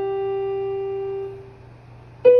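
A single note held on a portable electronic keyboard in a piano voice, ringing steadily and then fading away about a second and a half in.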